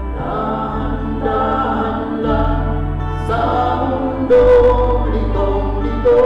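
Choir singing over an accompaniment of low, held bass notes that change about every two seconds, with a louder held note about four seconds in.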